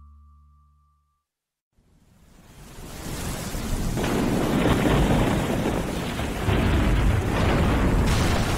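Heavy rain with rumbling thunder, a storm sound effect. It fades in out of silence about two seconds in and swells to full strength with a deep rumble from about four seconds in.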